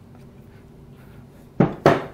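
Mostly quiet room tone, then near the end two short, sharp knocks of a wooden cutting board against a ceramic mixing bowl as chopped vegetables are pushed in.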